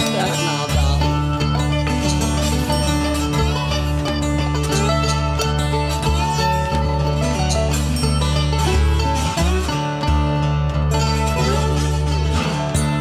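Instrumental break of a country blues song: bottleneck slide guitar and mandolin playing over steady low notes, with percussion, with no singing. Some notes slide in pitch, most plainly just before the end.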